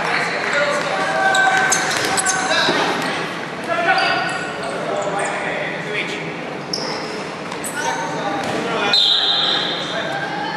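Dodgeballs thrown during play, with thuds and bounces on a hardwood gym floor and players' voices calling out, echoing in a large sports hall. A steady high tone sounds briefly near the end.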